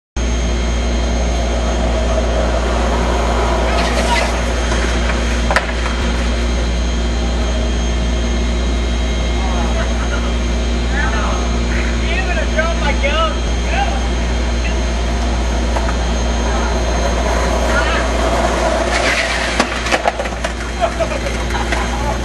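A steady, loud low hum, with voices calling out in the middle and again near the end, and a single sharp knock about five seconds in.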